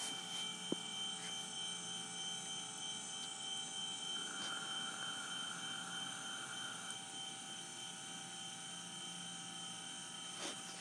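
Celestron CGX equatorial mount's drive motors slewing the telescope to a new target: a steady mechanical whir, with a rougher stretch of added noise from about four to seven seconds in.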